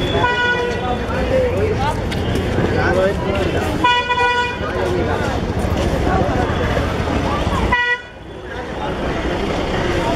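A vehicle horn toots three times: once near the start, a longer and louder blast about four seconds in, and a short one about eight seconds in, over the continuous chatter of a busy street crowd.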